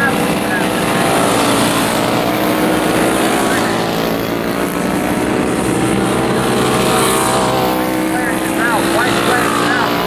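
Vintage racing go-karts with flathead four-stroke engines running at speed around the track, several engine notes overlapping in a steady drone.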